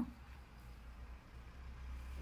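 Quiet room tone with a faint, steady low hum that grows a little louder near the end; no distinct handling sounds stand out.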